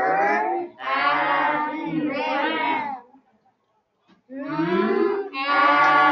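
A voice slowly sounding out a three-letter short-vowel word, stretching each letter sound long with the pitch sliding. It comes in two drawn-out runs, the second starting about four seconds in.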